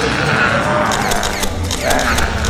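Excited shouting from a small group of people, one high voice loudest, with several quick clicks about a second in.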